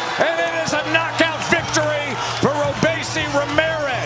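Excited voices shouting in short rising-and-falling calls, over background music with a steady low bass note that comes in about a second in, and a few sharp clicks.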